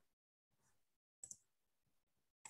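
Near silence: faint room tone over a video call, with a brief faint click a little past a second in.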